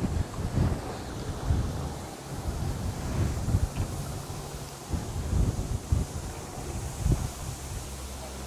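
Wind buffeting a moving microphone as it travels at wheel height with a riding electric unicycle, making an uneven low rumble with gusty thumps.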